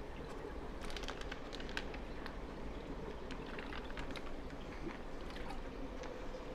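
Water trickling and splashing into a plastic bag held in a reef aquarium's return-pump outflow, with scattered small ticks and splashes over the steady run of the water.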